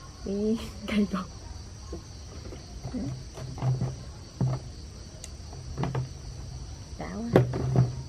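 A steady high chirr of night crickets, with scattered clicks and low knocks of tamarind pods being picked up and shifted on a woven bamboo tray. A short murmur of a woman's voice comes about a second in.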